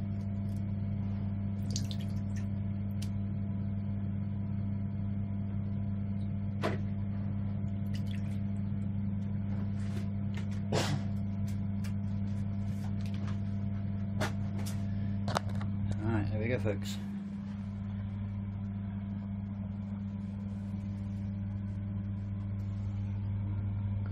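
A steady low mains hum from workshop equipment at the dip tank, with scattered light clicks and knocks from handling; the hum briefly dips about seventeen seconds in.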